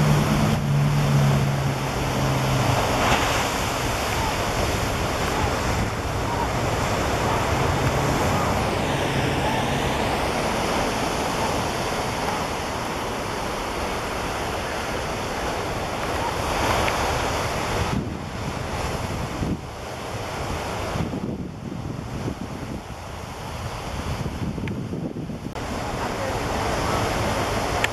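Ocean surf breaking on a sandy beach, a steady rushing wash, with wind buffeting the microphone. A low steady hum sits under it for the first few seconds.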